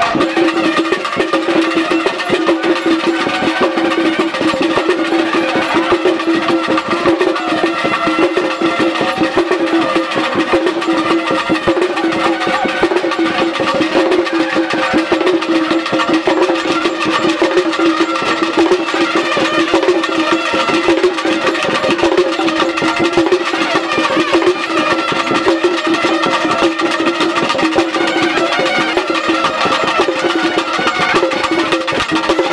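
Live traditional procession music: wind instruments hold a steady drone-like tone with a melody moving above it, over fast, continuous drumming.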